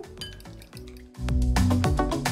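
A fork beating eggs in a glass bowl, with light clinks of metal against glass. About a second in, background music with a steady beat comes in and becomes the loudest sound.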